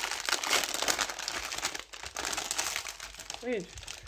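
Clear plastic film wrapping of a sticker multi-pack crinkling and rustling in irregular crackles as hands grip and pull at it to open it.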